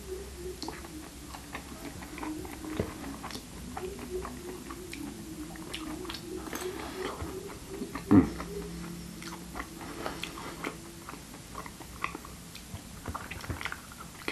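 Close-up chewing of soft food with many small wet mouth clicks and smacks, and one louder, brief mouth sound about eight seconds in.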